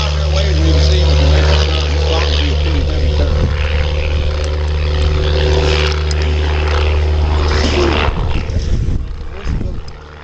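Single-engine propeller airplane flying past and climbing away, its engine drone steady and then fading near the end.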